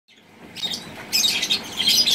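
Caged pet birds chirping and chattering in a dense, high-pitched stream, louder from about a second in.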